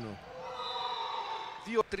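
Ambient sound of an indoor sports hall during a volleyball rally: a steady, even background noise with some echo.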